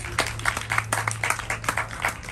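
Scattered applause from a small audience: a few people clapping irregularly.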